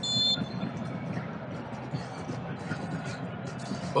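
A referee's whistle, one short blast, stopping play for a foul tackle. It is followed by a steady wash of stadium crowd noise.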